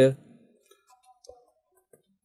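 The tail of a spoken word, then a few faint, scattered clicks and taps of a stylus on a pen tablet as handwriting is written.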